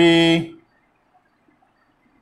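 A man's voice holding one long, steady-pitched drawn-out sound that stops about half a second in, followed by faint room sound.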